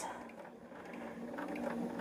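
Bernina sewing machine stitching pieced quilt fabric, a faint steady motor hum that grows a little louder near the end.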